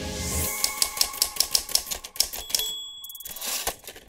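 Typewriter keys clacking in a quick run for about two seconds, ending with the ding of the carriage-return bell, over a music bed.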